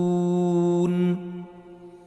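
A man's voice in Quran recitation holding the long, drawn-out final note of a verse ending at a steady pitch. It stops a little over a second in, and the hall's reverberation fades into faint room tone, the pause at the verse's end.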